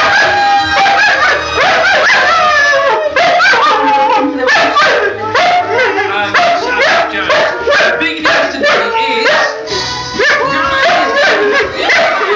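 A flat-coated retriever barking, yipping and howling over and over along with music from a television. The barks come in a rapid run, thickest in the middle of the stretch, between drawn-out howls.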